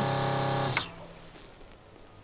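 Battery-powered SHURFLO electric water pump running with a steady hum and spray hiss, then cutting off suddenly about three-quarters of a second in as it is switched off.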